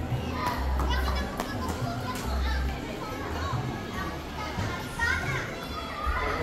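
Children playing and calling out, with indistinct chatter in the background.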